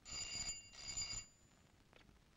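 Desk telephone ringing: one double ring, two bursts of about half a second each with a short gap, then it stops as the call is answered.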